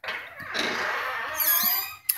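A brief high squeak that slides down in pitch near the end, over a steady hiss.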